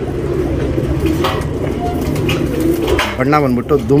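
Domestic pigeons cooing, a low wavering call that goes on through most of the stretch, with a man's voice coming in near the end.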